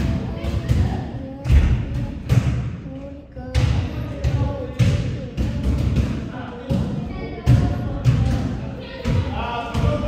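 Basketballs being dribbled on a hardwood gym floor: repeated thuds of the ball striking the court, roughly two a second.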